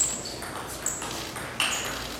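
Table tennis ball being hit back and forth in a fast rally: four sharp pocks of the ball on bats and table within two seconds, several with a brief ringing ping.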